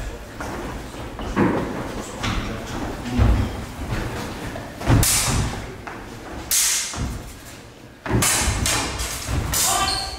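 Longsword sparring on a wooden floor: thumping footfalls and several sharp sword strikes. The loudest come about five seconds in and again near six and a half and eight seconds, ringing in a large hall.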